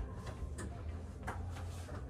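A few sharp ticks, spaced well under a second apart, over a low steady hum.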